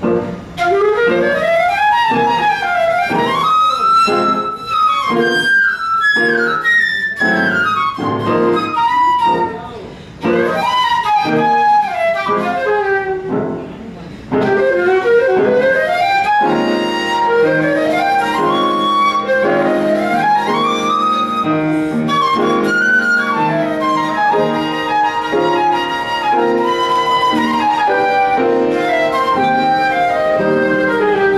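Concert flute playing fast jazz runs that climb and fall, with brief breaks in the line about a third and half of the way in, over piano accompaniment. From about halfway, sustained piano chords sound steadily beneath the flute.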